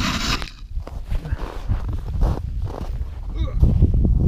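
A brief, sharp rustling scrape right at the start, then softer rustling of winter clothing as the person moves, over a continuous low rumble.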